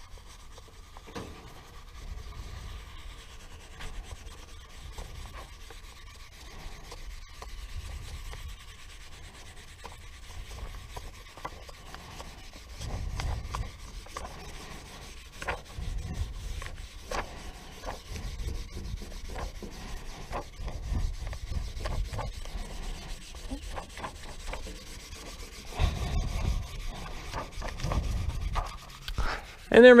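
Plastic squeegee rubbing back and forth over paper transfer tape to press vinyl lettering down onto a painted trailer panel, in faint, uneven scraping strokes with small ticks.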